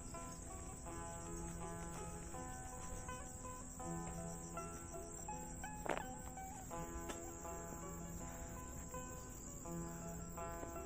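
Steady high-pitched insect chorus, with background music of held, changing notes over it and a single sharp click about six seconds in.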